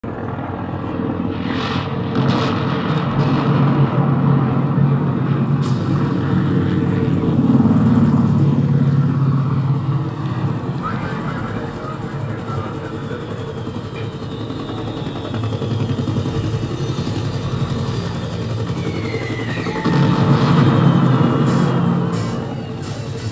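A steady low rumble, with a few short high whistles early on and a falling whistle near the end.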